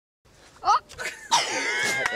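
A person's voice making a short non-speech outburst: a quick rising cry, then a longer, loud, high-pitched vocal sound.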